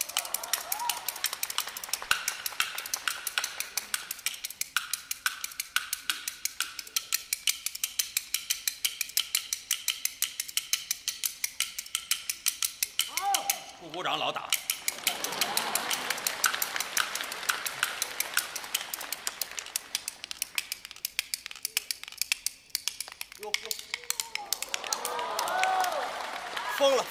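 Kuaiban bamboo clappers played in a fast, steady rhythm of sharp wooden clicks: the opening flourish before a kuaibanshu recitation. The clicking stops briefly about fourteen seconds in while a voice speaks.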